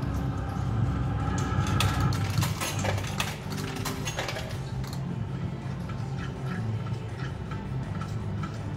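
Novoline Book of Ra Magic slot machine sounds: electronic game music and jingles over a steady low hum, with a dense run of clicks and chimes in the middle as the reels stop on a winning spin.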